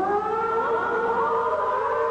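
Live gospel music: several notes slide up one after another into a long held chord.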